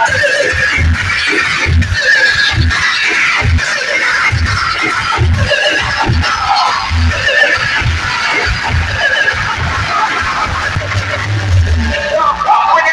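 Loud DJ dance music played through a truck-mounted sound system, with heavy bass kicks hitting about once or twice a second and a long held bass note near the end.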